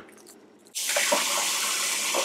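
Kitchen faucet running steadily into the sink, starting suddenly under a second in. It is rinse water for a film developing tank.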